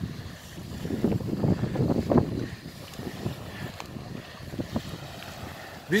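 Small waves washing onto a pebble shore with an irregular rattling hiss, swelling a second or two in and then easing, with wind rumbling on the microphone.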